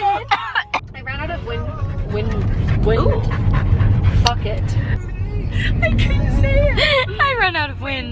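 Low, steady rumble of a moving car heard from inside the cabin, building after about a second, with snatches of women's voices over it.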